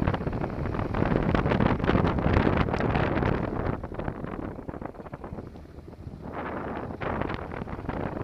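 Wind rushing over the camera microphone of a rider on a Honda NC700 motorcycle at road speed. The rush eases for about two seconds in the middle as the bike slows for a tight hairpin, then builds again as it speeds up.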